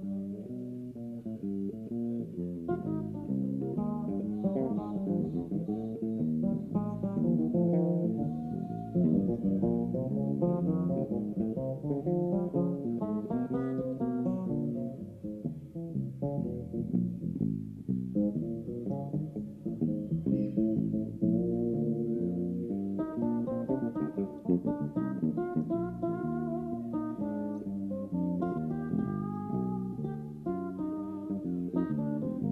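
Two electric bass guitars playing a live duet, both picking dense melodic lines in the low and middle register.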